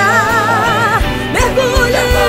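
Brazilian gospel song: a woman's lead voice holds a long note with vibrato for about a second, then a new phrase starts over the instrumental accompaniment.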